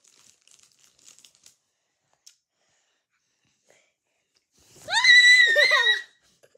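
A young girl's high-pitched, wavering squeal lasting about a second near the end, after a few seconds of faint rustling and near quiet.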